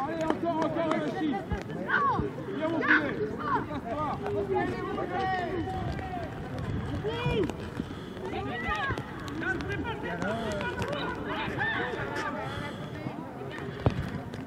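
Many overlapping voices shouting and calling out from youth rugby players and touchline spectators during open play. A single sharp knock near the end.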